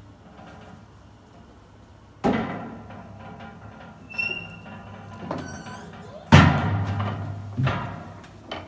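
Metal clanks and squeaks from a casket lift's frame and mechanism as it is worked on: a ringing clank about two seconds in, short high squeaks, then the loudest clank about six seconds in followed by a brief low hum and another knock near the end.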